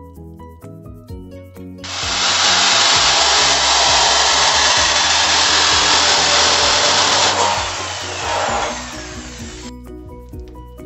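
A power cutting tool cutting through the edge of a metal satellite dish. The noise starts about two seconds in, runs steadily for about five seconds, then drops away as the tool winds down.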